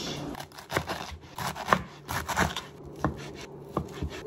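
Kitchen knife chopping food on a cutting board: a series of sharp, irregularly spaced knocks.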